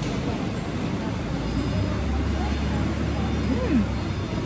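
Steady low rumble of machinery in a large fruit-packing hall, with a deeper hum that comes in about a second and a half in.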